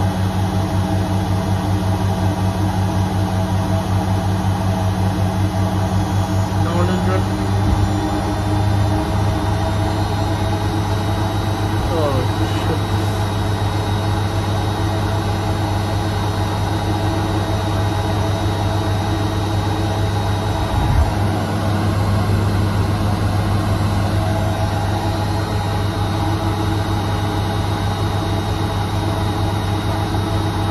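Bendix front-loading washing machine in its final spin at up to 1000 rpm, its drum spinning an unbalanced load: a loud, steady motor hum with a fast low pulsing beneath it. The pitch rises about seven seconds in as the spin speeds up, and there is a brief knock later on.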